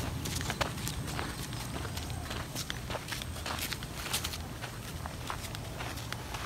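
Footsteps on a dirt and gravel road, roughly two steps a second, over a low steady rumble.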